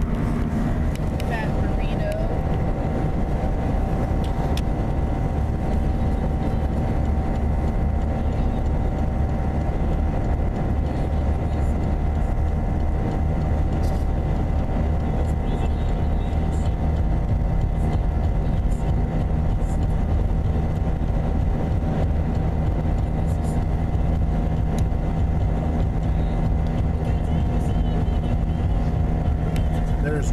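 Steady drone of a car driving at highway speed, heard from inside the cabin: engine hum and tyre noise, with an even level and no changes.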